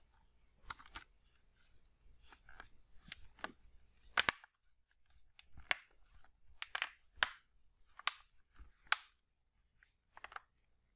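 Plastic back cover of an Acer Iconia One 10 tablet being pressed on by hand, its clips snapping into place in a string of about a dozen sharp clicks, the loudest about four seconds in.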